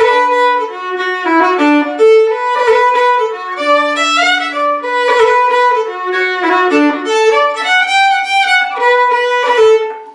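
Solo fiddle playing a phrase of an Irish jig in B minor, note by note, opening with a roll ornament on the first note that is played as fast as the fingers will go.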